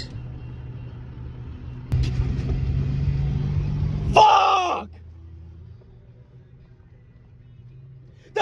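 Low engine and road rumble inside a car's cabin. It gets louder for about two seconds in the middle, then drops away. A short burst of a voice cuts in about four seconds in.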